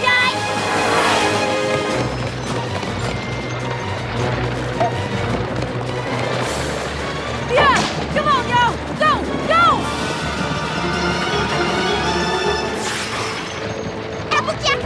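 Background music for a cartoon chase, broken by several sudden crashes and a quick run of short shouts about eight seconds in.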